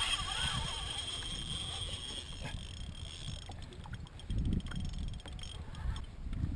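Wind buffeting the microphone on an open kayak, an uneven low rumble with stronger gusts near the end. A faint steady high whine sits over it and fades out about halfway through.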